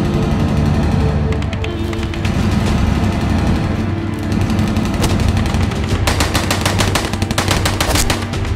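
Automatic rifle fire in rapid bursts, a short burst about a second and a half in and a long, fast burst about six seconds in, over a dramatic film score.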